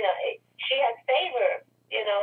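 A person talking over a telephone line, the voice thin, with no deep or high tones. A faint steady hum runs underneath.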